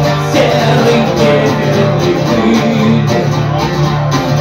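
Live music: an acoustic guitar strummed steadily, with a man singing over it at the microphone.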